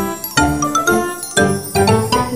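Bright music jingle with tinkling, bell-like notes over a low bass, its chords striking about every half second.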